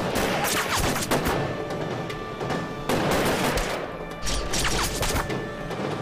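Volleys of rifle gunfire: rapid shots packed close together in the first second or so, then scattered single shots, with background music underneath.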